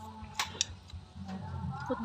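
Eating at a table of sliced mango: two short, sharp clicks about half a second in as pieces are picked from the plate and bitten.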